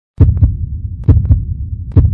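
Deep bass thumps in a heartbeat-like rhythm, each strong hit followed by two or three quicker, softer ones, repeating about once a second over a low drone.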